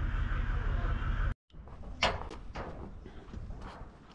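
Steady low workshop hum that cuts off abruptly about a third of the way in, followed by quieter room tone with scattered light knocks and clicks, the sharpest about halfway through.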